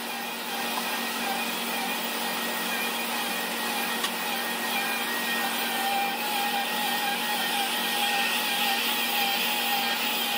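Bagless upright vacuum cleaner running on carpet: a steady motor whine with fixed tones, growing a little louder in the second half as it comes closer. A single sharp click sounds about four seconds in.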